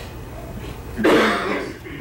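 A person coughs once, about a second in, a harsh burst lasting under a second.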